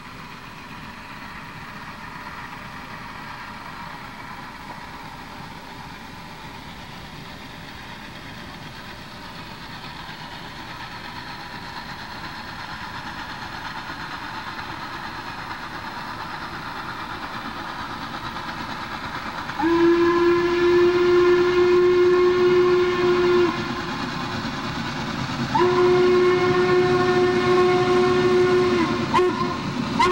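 Rumble of an approaching train, building slowly. Then a steam locomotive's whistle, Norfolk & Western Class A 1218, sounds long blasts: the first about two-thirds of the way in, lasting some four seconds; a second a couple of seconds later; a third starting just at the end. Each blast sags slightly in pitch as it is shut off.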